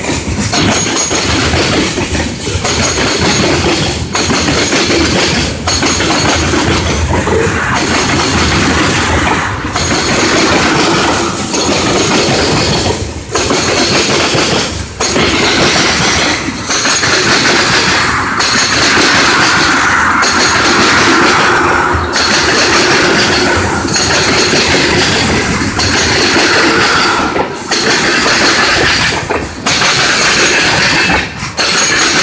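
Norfolk Southern freight cars rolling past close by: a steady loud clatter of wheels on rail, dipping briefly about every two seconds as the cars go by.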